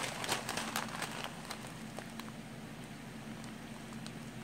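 A plastic bag of small glitter shapes being handled and squeezed, crinkling and crackling, busiest in the first second and a half, then only a few scattered ticks.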